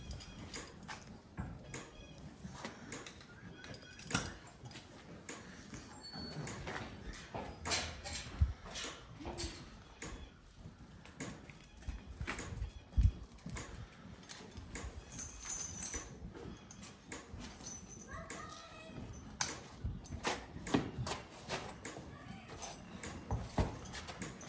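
Draft mules being harnessed: harness hardware clinking and rattling and hooves shifting on a dirt barn floor, a string of short clicks and knocks. Two sharper knocks stand out, a few seconds in and about halfway.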